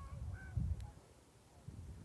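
Quiet outdoor ambience: a low rumble with a couple of faint short calls near the start, then near quiet.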